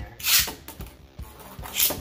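Two Beyblade Burst tops launched into a plastic stadium, each launch a short, loud hissing rip of the launcher: one just after the start, the second near the end. Light clicks sound between the two launches.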